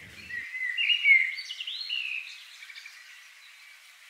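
Birds chirping: a few overlapping short, high calls that thin out and fade away about halfway through.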